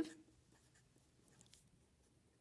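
Felt-tip marker writing on paper: faint, scratchy pen strokes.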